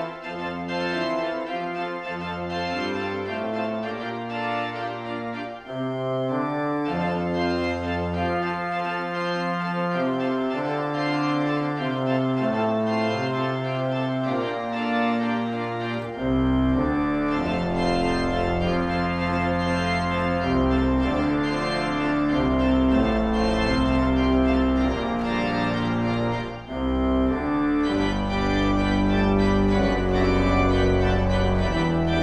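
Church organ playing a toccata: sustained chords under a busy upper line on the manuals. About halfway through, deep pedal bass notes come in and the sound grows louder and fuller.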